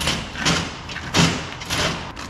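A few dull thumps, about one every half second, the loudest a little past the first second.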